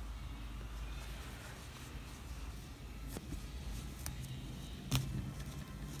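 Quiet handling of yarn as it is tied into knots by hand: a steady low hum with a few faint clicks, the clearest just before five seconds in.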